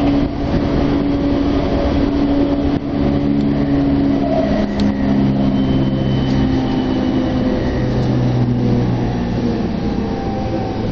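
JR Chuo-Sobu Line electric commuter train heard from inside the car: steady running noise of wheels on rail with the hum of the traction motors. Partway through, the motor tones shift lower as the train slows on its approach to Ogikubo station.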